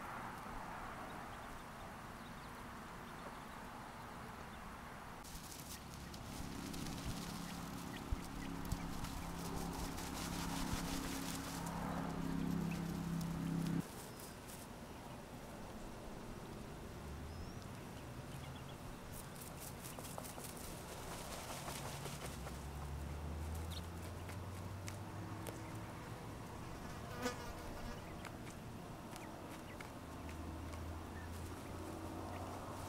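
Buzzing of a flying insect close by that stops suddenly about halfway through, followed by a lower, steadier hum; a brief sharp sound comes near the end.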